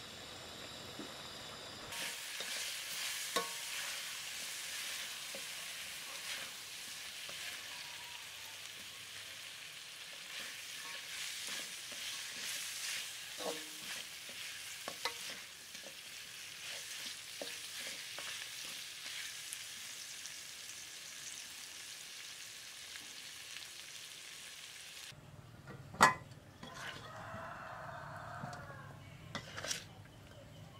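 Pork rib pieces sizzling as they fry in a pan, with now and then the short scrape or knock of a spatula stirring them. Near the end the sizzling stops and one sharp knock stands out.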